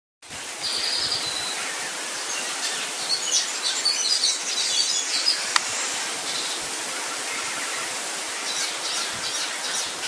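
Short, high bird chirps, clustered a few seconds in and again near the end, over a steady hiss, with one sharp click midway.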